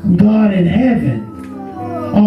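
A voice singing with its pitch swooping up and down in arches, over background music.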